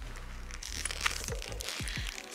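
Soft crinkling and rustling as a metallic silver, crackle-textured faux-leather bag and its studded strap are handled in the hands, over quiet background music with low beats.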